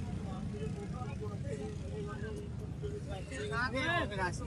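Busy street market background: a steady low rumble of motorcycle and auto-rickshaw engines under faint, distant voices, with a short rising-and-falling call near the end.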